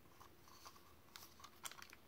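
Near silence with a few faint clicks of hands handling a plastic Rocksteady action figure.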